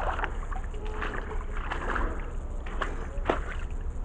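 Shallow creek water trickling over rocks, with a steady low rumble on the microphone and a few faint clicks.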